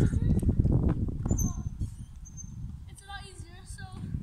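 Wind rumbling on the phone's microphone, loud for about two seconds and then easing off, with faint voices in the background near the end.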